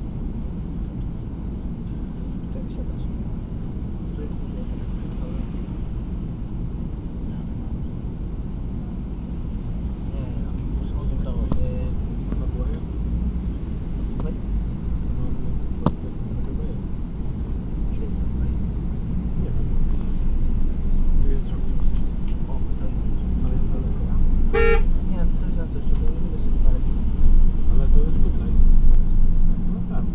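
Low, steady rumble of a city bus's engine heard from inside the bus, growing louder in the second half as the bus pulls away from a traffic light. A short horn-like toot sounds about 25 seconds in.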